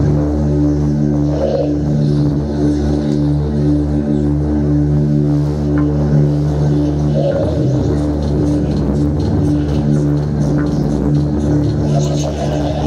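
Live rock band playing instrumentally, with electric guitar and bass holding low sustained notes over drums.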